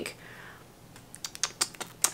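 A quiet run of about half a dozen short, sharp clicks in the second half, after a faint breathy hiss.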